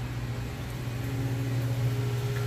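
Steady low machine hum, with a fainter higher tone joining about a second in.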